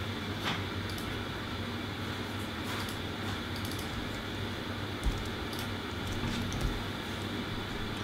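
A few faint, scattered computer mouse clicks over a steady low hum of room tone.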